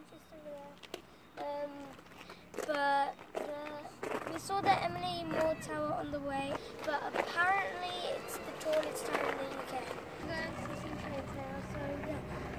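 A child talking, high-pitched and in short phrases, over faint outdoor background.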